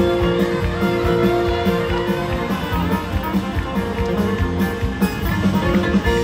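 Live country band playing an instrumental passage with no vocals: fiddle and guitars over bass and a steady drum beat.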